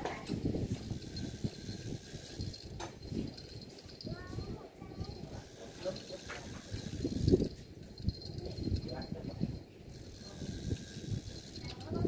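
Spinning reel being cranked to retrieve line on a fishing rod bent under load.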